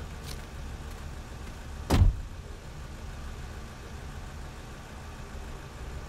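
A car door slammed shut about two seconds in, a single heavy thud, over the steady low rumble of the car's engine idling.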